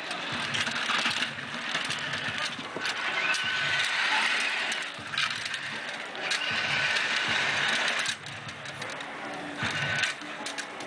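Small electric motor of a remote-controlled miniature ride-on motorcycle running in spurts, with a steady whine in two stretches of a couple of seconds each, over a busy outdoor background hum.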